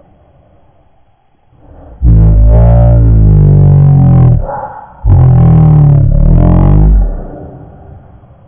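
Dirt bike engine revved hard twice, each rev held about two seconds, with a short dip between them; very loud, close to the microphone.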